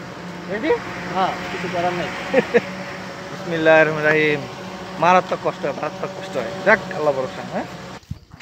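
People talking over a jeep's engine running steadily at idle. The engine hum cuts off abruptly at the end.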